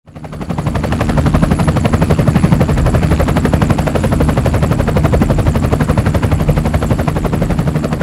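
A machine running with a fast, even pulsing beat over a steady low hum, fading in at the start.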